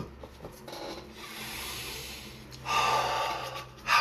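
A person's long, breathy exhale, like a sigh, about three seconds in and lasting about a second, over quiet room noise with a faint low hum.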